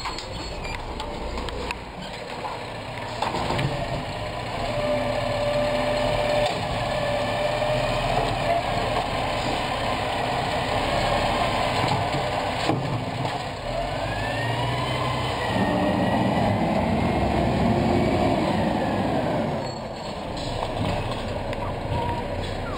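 Garbage truck running on the street, its engine a steady low drone. A whine rises and falls over it, and past the middle the engine and hydraulics grow louder for a few seconds as the truck works.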